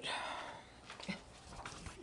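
A person's short, breathy sigh at the start, followed by a few faint small clicks.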